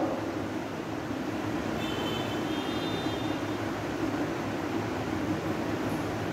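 Steady low background rumble, with a faint high-pitched tone for about a second a couple of seconds in.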